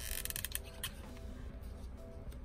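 Soft background music with a few light rustles and taps of paper being handled on a tabletop in the first second.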